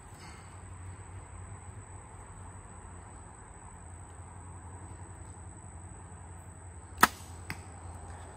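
Compound bow shot: one sharp, loud snap of the string on release about seven seconds in, followed half a second later by a fainter knock.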